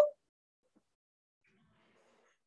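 The last trailing syllable of a woman's voice, then near silence on a video-call line.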